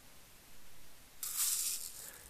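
Small lead shot pellets (2.9 mm) rattling and rustling as a tubular shot measure is pushed into a tub of shot to scoop a charge, a brief rattle in the second half.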